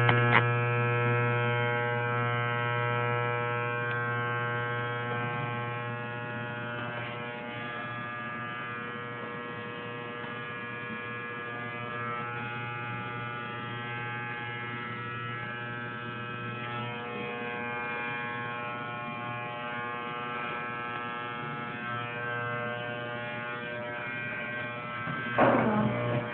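Electric hair clippers buzzing steadily while shaving a head. The lowest part of the hum weakens about two-thirds of the way through.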